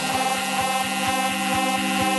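House music in a breakdown: a sustained synth chord with a hissing noise wash and no kick drum or bass, under a faint quick ticking pulse.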